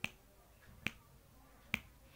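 Three sharp finger snaps, evenly spaced a little under a second apart, keeping a steady beat.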